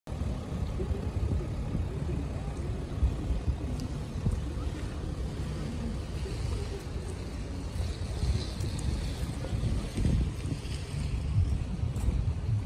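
Wind buffeting the microphone outdoors: an uneven, gusty low rumble with no steady tone.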